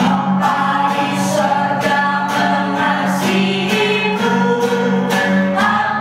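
Voices singing an Indonesian children's praise song together to acoustic guitar accompaniment, with a steady beat of sung phrases over sustained low notes.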